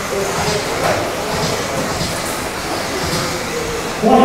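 Electric off-road RC buggies with 13.5-turn brushless motors racing on a dirt track: a steady, noisy din of motors and tyres.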